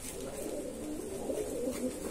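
Indian fantail pigeons cooing in a steady low chorus.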